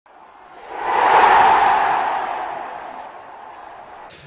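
A whoosh sound effect that swells up about a second in and then fades slowly over the next two seconds.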